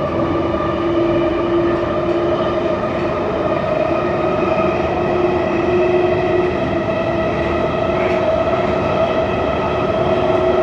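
A London Underground 1972 Stock train running through a tunnel, heard from inside the carriage. There is a steady loud rumble with a steady whine over it, the sound of the train holding its speed.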